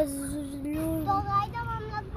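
A high voice singing long held notes, stepping up to a higher phrase about a second in.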